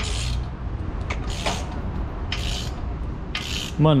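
Hand ratchet wrench being worked back and forth on exhaust manifold bolts, a short rasping burst of clicks on each stroke, about once a second.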